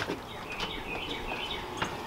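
Small birds chirping repeatedly in short falling notes. A light click comes near the end as the glass storm door is opened.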